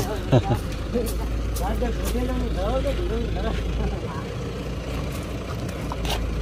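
People talking at a distance, over a steady low rumble that drops out for about two seconds near the end.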